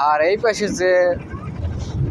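A person speaking over a steady low rumble.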